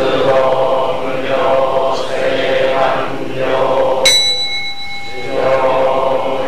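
Buddhist sutra chanting in one steady, monotone pitch, phrase after phrase. About four seconds in, a small temple bell is struck once and rings with clear tones before the chanting resumes.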